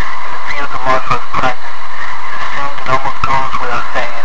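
A loud, heavily distorted voice in short phrases with brief gaps between them.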